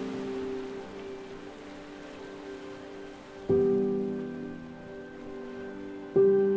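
Soft piano background music: a held chord fades away, and a new chord is struck about three and a half seconds in and dies away slowly. Under it runs a faint steady hiss.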